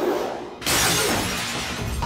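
Glass display case shattering as a body is smashed into it, a loud crash about half a second in, with background music underneath.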